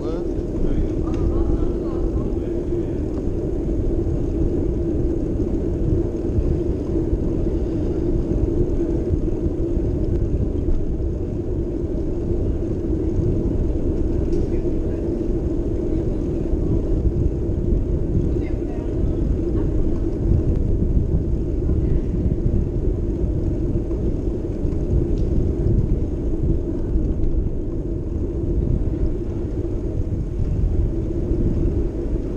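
Steady, muffled rumble of wind and rolling noise picked up by an action camera moving along a street.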